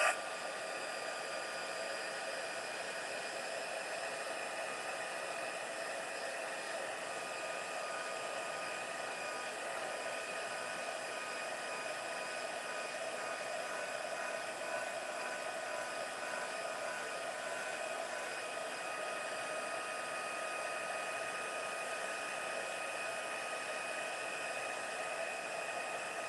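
Craft heat tool running steadily, blowing hot air onto a card to dry wet watercolour ink: an even whir of rushing air with a steady motor whine.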